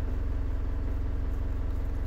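Steady low mechanical rumble with a constant hum, like a running engine or motor.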